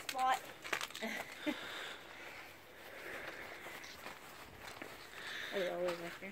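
Footsteps on bark mulch, with a few short crunches in the first second and a half and softer steps after that.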